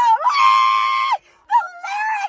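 A woman's high, loud voice in excited vocalising: one long held high note that breaks off just after a second in, then a shorter high note near the end.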